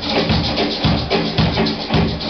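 Live rock band playing: electric guitars and a drum kit, with the kick drum landing steadily about twice a second under sustained chords and a constant cymbal wash.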